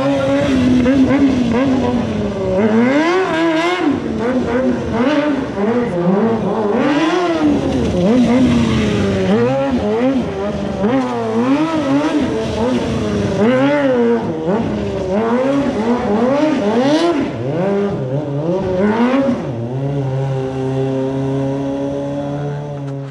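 Motorcycle engine revving up and down over and over, roughly once a second, as the bike is ridden through tight turns. Near the end the revving gives way to steady held tones.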